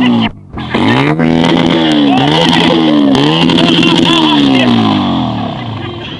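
Small hatchback's petrol engine (first-generation Ford Ka) revving up and down over and over, the pitch rising and falling about once a second, with a brief dip in the sound near the start.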